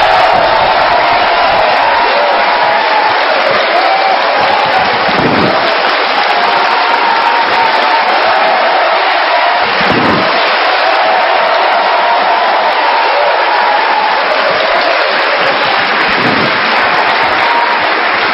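A studio audience applauding and cheering, a loud, dense, unbroken wall of clapping with shouting voices over it.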